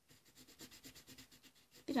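Coloured pencil scribbling back and forth on paper, shading in a small area: faint, scratchy strokes at about five a second.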